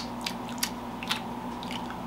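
Faint mouth sounds of people tasting a drink: a few soft lip smacks and clicks over a low steady hum.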